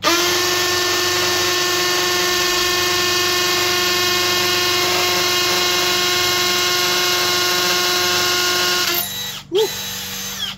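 Milwaukee M12 Fuel 3404 hammer drill boring a quarter-inch hole into a concrete block: a loud, steady motor whine for about nine seconds, then it stops, with a brief loud burst about half a second later.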